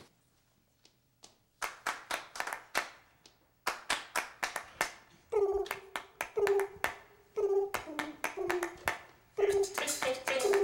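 An a cappella vocal-play performance starting up: after a second and a half of near silence, sharp percussive clicks set a rhythm, and about five seconds in short sung notes join them, about one a second.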